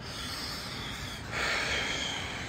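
Close-up breathing of a man smoking a cigarette: two long breaths, the second one louder, starting just over a second in.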